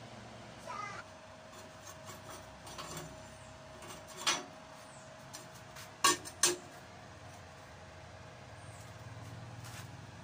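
Light metallic knocks and clanks as an aluminium Ducati fuel tank is handled and set down on a steel workbench. There are scattered small taps, one sharper knock about four seconds in, and the two loudest clanks in quick succession around six seconds.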